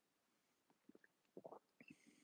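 Near silence, broken by a few faint short swallowing sounds about one and a half seconds in, from a person drinking from a mug.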